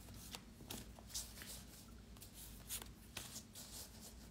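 A deck of metaphorical associative (MAC) cards being shuffled by hand: faint, irregular flicks and slides of cards against each other.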